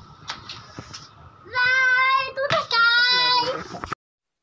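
Two long, high-pitched vocal notes, about a second each, the second wavering in pitch, after a few faint clicks.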